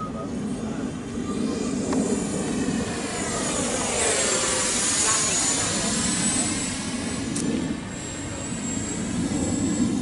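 Electric ducted-fan motor of a Freewing F-104 model jet in flight, a high steady whine that swells and changes pitch as the jet passes overhead about four to six seconds in.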